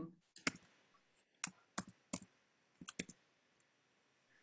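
A series of quiet, sharp clicks from a computer mouse and keyboard: about eight in all, in irregular singles, a pair and a quick run of three.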